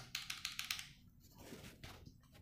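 Keys of a Rexus Legionare MX3.2 mechanical keyboard being pressed: a quick run of faint clicks in the first second, then a few scattered ones.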